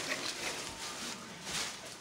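Faint movement noise: soft rustling with a few light knocks over low room hiss.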